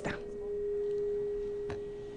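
A steady single mid-pitched tone from the chamber's sound system, swelling and then slowly fading, with one click a little past halfway.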